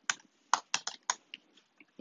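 Typing on a computer keyboard: about eight separate keystrokes, as a short word is typed into a code editor.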